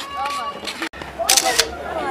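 People's voices talking, cut off abruptly for an instant about a second in, then a quick cluster of sharp clicks.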